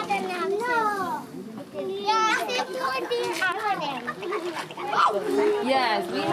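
A group of young children's voices chattering and calling out over one another.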